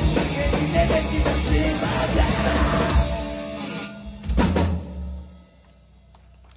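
Live rock band with drums, electric guitar and keyboard playing the closing bars of a song: loud and full for about three seconds, then thinning out, with one last accented hit just past four seconds that rings out and dies away near the end.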